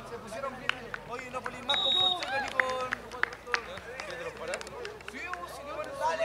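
Voices of players and touchline spectators calling out and talking across an open rugby pitch, with a brief high whistle note about two seconds in and a few scattered short clicks.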